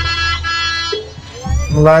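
Jaranan gamelan music led by a slompret, the East Javanese shawm: one long reedy held note over a low drum and gong bass, then a rising phrase near the end.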